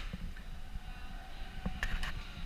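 Low, uneven background rumble with no clear source, and a couple of short clicks near the end.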